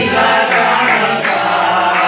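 Group of voices chanting a mantra together in devotional kirtan, held sustained tones.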